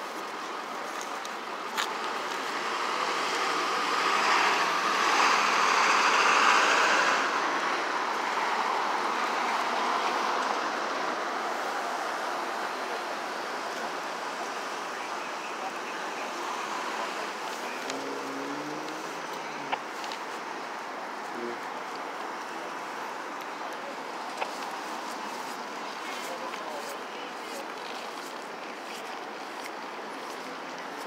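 City street traffic noise: a vehicle passes close by a few seconds in, swelling and then slowly fading, over a steady hum of road traffic, with a few small clicks.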